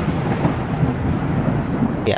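Thunder-like rumble sound effect: the fading tail of a sudden boom, a noisy rumble dying away slowly, with no tune in it.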